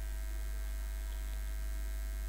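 Steady low electrical hum, like mains hum picked up in the recording, with no other sound.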